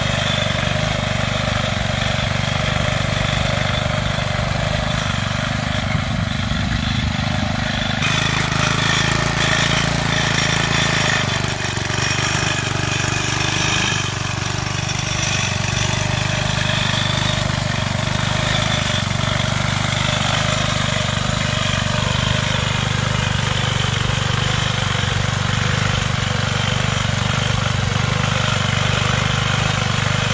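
Engine of a David Bradley Super 3 walk-behind garden tractor, a replacement rather than the original engine, running at a steady level while the tractor pulls a shovel cultivator through the soil.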